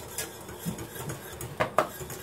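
Quiet kitchen handling with two light clinks of a cooking utensil against cookware near the end.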